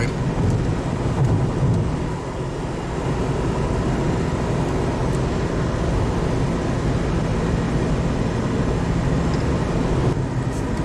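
Steady road noise of a car driving at highway speed, heard from inside the cabin: a continuous low rumble of tyres and engine.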